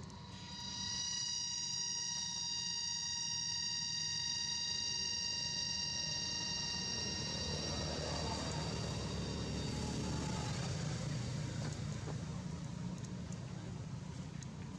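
Distant engine: a steady high whine made of several tones over a low rumble. The whine fades out over the second half while the rumble swells.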